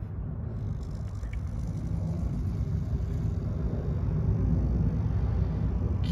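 Steady low outdoor rumble with no distinct event standing out, slowly growing louder.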